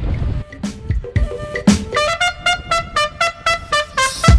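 Background music: a melody of short, quick notes over drum hits, joined by a fuller band with a heavy bass beat right at the end. Street noise is heard briefly at the very start.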